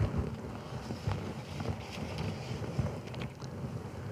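Quiet room noise picked up by the pulpit microphone, with a few faint rustles and clicks as sheets of paper notes are handled.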